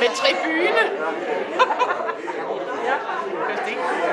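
Several people talking at once in a large hall: overlapping conversation and chatter.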